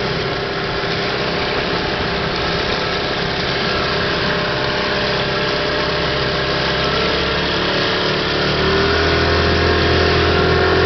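An 18 hp two-stroke outboard motor runs steadily at low throttle, pushing the small boat along. About eight seconds in its pitch rises and it grows louder as it speeds up.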